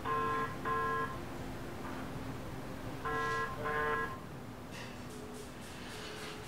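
Telephone ringback tone: two short rings, a pause of about two seconds, then two more. The call is ringing out unanswered.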